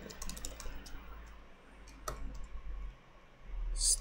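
Computer keyboard typing: scattered key clicks, a quick run at the start and a few more about two seconds in, with a short hiss near the end.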